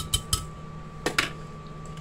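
A few quick clinks and knocks in the first half second, from a glass blender jar and kitchen utensils being handled on the counter, over a faint steady hum.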